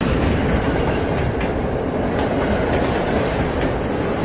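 Train rolling along rails: a steady rumble with faint clicks of the wheels.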